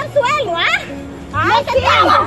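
Women's high-pitched shouting and cries during a scuffle on the ground, in two bursts: one in the first second and a louder one from about a second and a half in.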